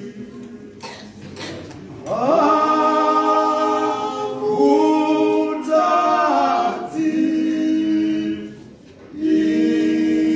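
Men's choir singing a cappella in harmony. After a quieter opening, the full choir comes in about two seconds in with an upward sweep and holds sustained chords, breaks off briefly near the end, then comes straight back in.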